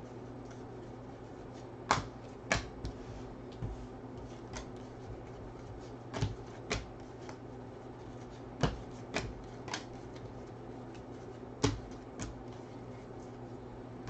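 Football trading cards being flipped one after another through the hands, the card edges giving sharp, irregular clicks and snaps, about ten in all, over a faint steady low hum.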